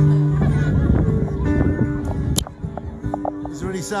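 Live amplified acoustic guitar music from a stage, with held notes throughout. A single sharp click comes a little over two seconds in, and after it the music is quieter.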